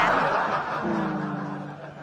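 Audience laughter after a punchline in a comedy sketch, fading away steadily, with a low held tone underneath from about a second in.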